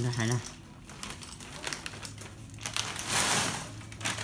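A plastic cereal bag crinkling as it is handled, in several irregular bursts, the loudest about three seconds in.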